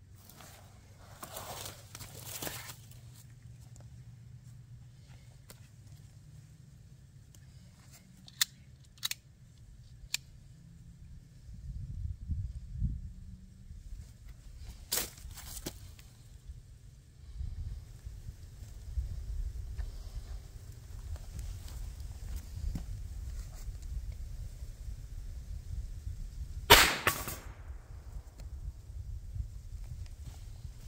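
A single shot from a Raven .25 ACP pocket pistol near the end, one short sharp crack. Before it, a few faint clicks and a low rumble.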